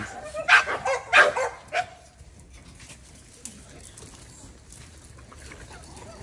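A dog barking: a few short barks in the first two seconds, then quiet.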